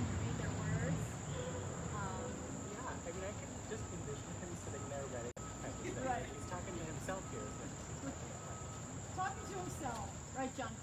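Steady high-pitched chorus of late-summer insects, such as crickets, buzzing without a break.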